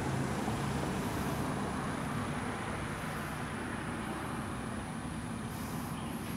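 Steady road traffic noise, with a low vehicle engine hum that fades out a couple of seconds in.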